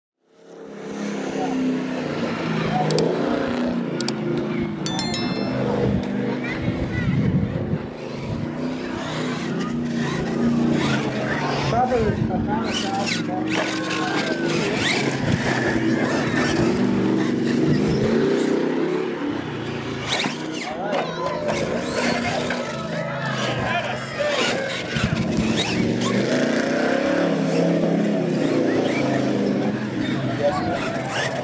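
Radio-controlled monster truck running on gravel, its motor revving up and down and its tyres spinning in the loose stones, fading in about a second in. Spectators chatter throughout.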